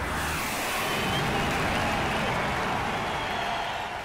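Jet flyby sound effect: a rushing jet noise that starts suddenly, holds steady with a slowly falling pitch, and begins to fade near the end.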